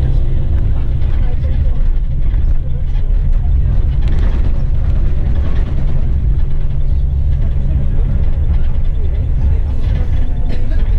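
Steady low rumble of a coach's engine and road noise, heard from inside the cabin while it drives, with indistinct voices talking over it.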